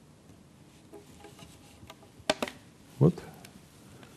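Two sharp clicks a little past halfway: a white plastic pipe and its corner fitting knocking together as they are fitted by hand, over quiet room tone.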